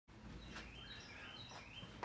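Very quiet room tone: a faint low hum and hiss, with a few faint, high wavering chirps.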